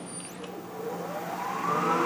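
Wood lathe motor starting up and spinning the star-shaped thread-cutting bit in its spindle: a whine that rises steadily in pitch and grows louder as the lathe speeds up toward about 3000 RPM.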